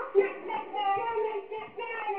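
A child singing in a high voice, with short drawn-out notes that waver in pitch.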